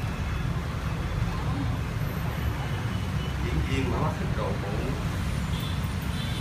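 Street traffic, mostly motorbikes, as a steady low rumble, with a faint voice about two thirds of the way through.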